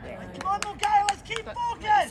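Men shouting on an outdoor football pitch: a string of short, high-pitched calls starting about half a second in, the loudest near the end.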